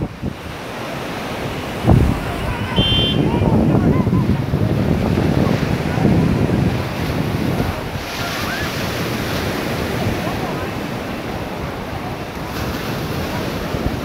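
Wind buffeting the microphone over the steady wash of surf on a beach, with faint, distant voices of people. A brief high tone sounds about three seconds in.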